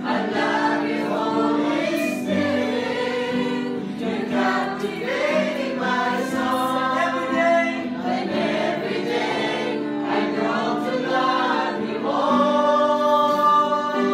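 A group of voices singing a slow Christian worship song together, with steady held notes of accompaniment beneath the singing.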